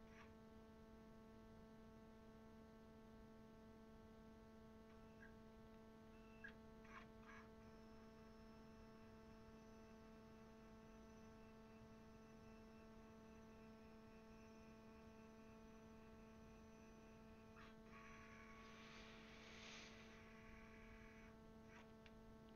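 HP Scanjet G4050 flatbed scanner working through a scan: a faint, steady hum of several fixed tones from its carriage motor, with a short stretch of noisier whirring near the end.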